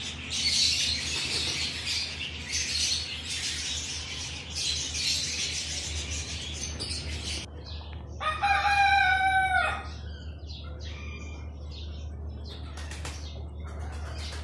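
A rooster crowing, one long call about eight seconds in that lasts well over a second and is the loudest sound. Before it come irregular bursts of hissing rustle.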